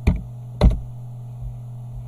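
Two sharp computer keyboard clicks about half a second apart as a seam width is entered, over a steady low mains hum.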